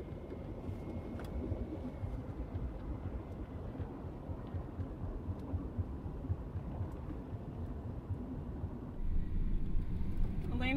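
Car cabin noise while driving: a steady low rumble of engine and road, heard from inside the car, which gets louder about nine seconds in.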